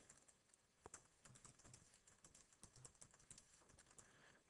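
Faint typing on a computer keyboard: a quick, uneven run of key clicks, most of them from about a second in.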